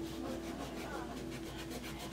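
Quick, light rubbing strokes, about four or five a second, of a wipe on a painted chalkboard sign, cleaning stray chalk paste off around the stenciled letters.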